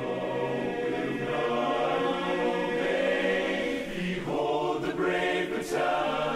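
Large men's barbershop chorus singing a cappella in close harmony, holding full, sustained chords.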